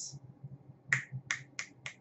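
Four quick finger snaps, about three a second, from a man snapping his fingers while trying to recall a name.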